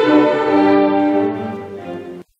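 Cello and string orchestra playing classical music, sustained bowed notes that fade away over the last second.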